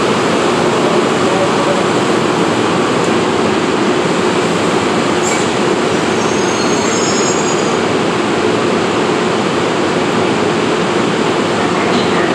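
NJ Transit bilevel commuter train rolling slowly along an underground platform: a loud, steady rumble of wheels and running gear. A single click comes a little after five seconds, and a faint high wheel squeal follows about six to seven seconds in.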